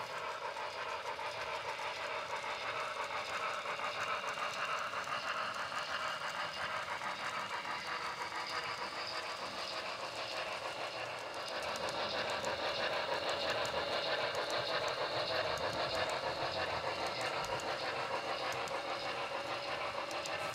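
HO scale model freight train running along the track behind a model steam locomotive. The sound is steady and grows a little louder about halfway through.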